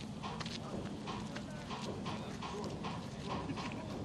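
Rhythmic clacking, about three knocks a second, over a low steady hum from the rollout train slowly hauling the Soyuz rocket transporter along the rails.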